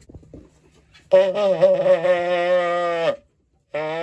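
A trumpet blown as a call to bring the pigeons in to the loft: one long steady note of about two seconds, then a second note starting near the end.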